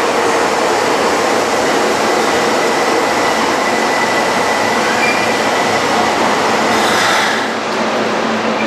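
Osaka Municipal Subway 30 series electric train running slowly into an underground station platform and braking to a stop, with a thin steady high-pitched squeal. A short burst of hiss comes near the end as the train halts.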